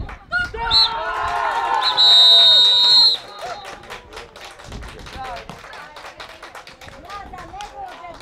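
Referee's whistle: a short blast about a second in, then a long blast of about a second, the final whistle of the match. Young players' shouts rise around it.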